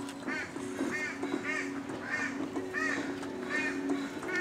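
A bird calling over and over, short rising-and-falling calls about two to three a second, over quiet background music with sustained notes.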